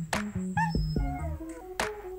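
Background music with a steady drum beat and bass line. Just after half a second in, a short, high, bending cry, like a meow, sounds over it.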